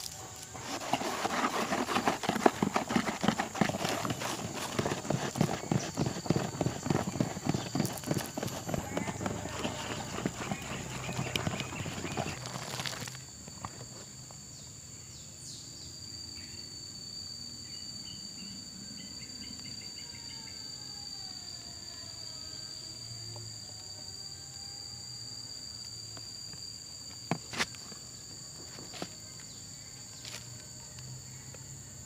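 A bamboo stick stirring soapy, foaming liquid in a plastic bucket: fast, irregular knocking against the bucket and sloshing for about thirteen seconds, then stopping suddenly. A steady high whine stays in the background, and two sharp clicks come near the end.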